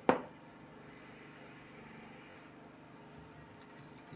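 A single sharp knock of a mixing bowl handled on the worktop right at the start, then only faint steady room hum.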